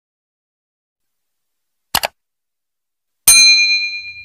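Silence, then a short double click about two seconds in. About three seconds in comes a loud strike with a ringing, bell-like ding that fades out: an edited-in intro sound effect.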